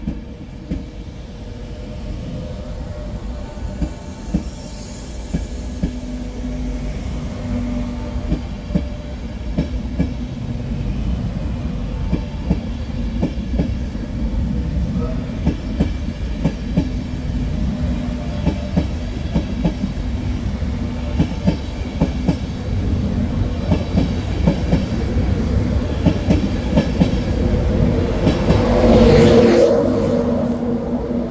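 LNER InterCity 225 train of Mark 4 coaches rolling past, its wheels clicking over rail joints over a steady rumble. The sound grows louder as the train goes by, and is loudest near the end, when the Class 91 electric locomotive at the rear draws level and adds a steady hum.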